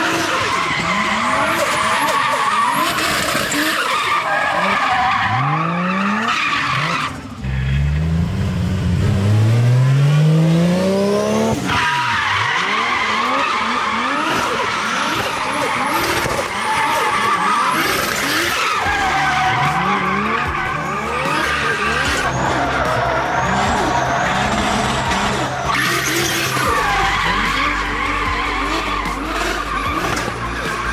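Nissan 350Z drift car with a forged, turbocharged Toyota 1JZ straight-six, drifting: the engine revs up and down in repeated sweeps over continuous tyre squeal. About seven seconds in, one long rev climbs steadily for several seconds before dropping away.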